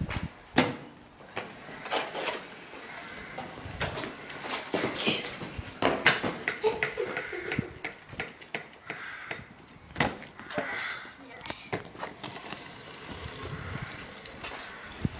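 Sharp knocks and clatters of a stunt scooter on tarmac, coming every second or two, with faint voices between them.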